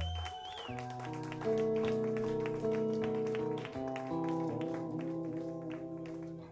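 Live rock band music: held chords over a low bass line, changing every second or so, with a fast, steady run of clicks over the top.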